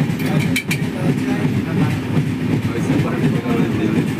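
Passenger train running, heard from inside the carriage through an open window: a steady rumble of wheels on the track, with a few sharp clicks about half a second in.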